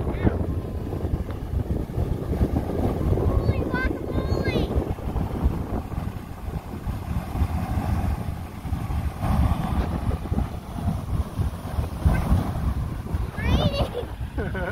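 Beehive Geyser erupting: a steady rush of water and steam jetting from its narrow cone, mixed with wind buffeting the microphone.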